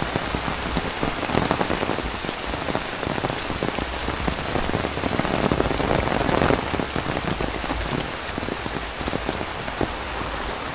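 Heavy rain pattering on an umbrella canopy: a dense hiss of rainfall with many sharp drop ticks, swelling louder about a second in and again around five to six seconds in.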